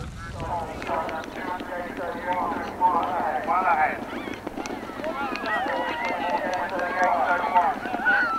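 Indistinct voices calling out over the hoofbeats of several horses galloping past on grass.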